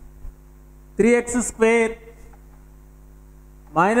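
Steady electrical mains hum with a stack of low, even tones running under the recording. A man's voice speaks briefly about a second in and starts again near the end.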